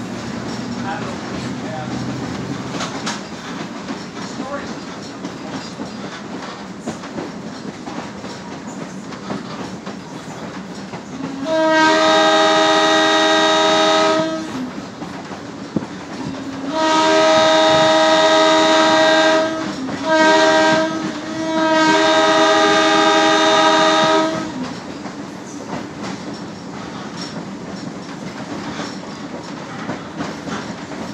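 Chicago, North Shore & Milwaukee interurban car 251 running along the rails, heard from inside the car with a steady rumble and clickety-clack. About twelve seconds in, its horn sounds a loud chord in the pattern long, long, short, long: the standard grade-crossing signal.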